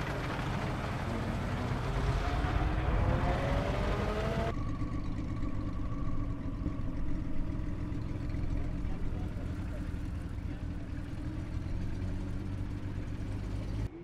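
Classic car engines on the move: an engine speeding up with a rising note for a few seconds, then a steadier running engine with traffic noise after a cut.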